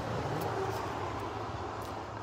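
Street traffic: a vehicle's steady running noise with a constant low hum.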